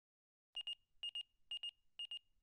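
Electronic interface beeps in a sci-fi logo sound effect: short high-pitched double beeps, about two pairs a second, starting about half a second in.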